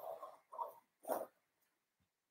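Three short scratchy pencil strokes on a stretched canvas, about half a second apart, the last one the loudest, as lines are drawn.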